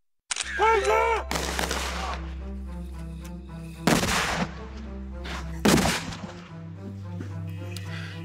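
Background music with steady held notes, cut by three loud explosion bangs: one about a second in, one near the middle and one near six seconds. Before the first bang there is a short high warbling sound.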